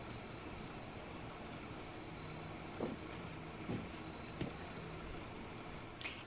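Quiet room tone: a steady faint background hiss with a faint low hum in the middle and three soft taps.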